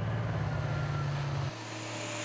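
Underground haul truck's diesel engine running with a steady low rumble as it drives out loaded. About one and a half seconds in it cuts off suddenly, giving way to the steady hiss of a high-pressure water cannon jet.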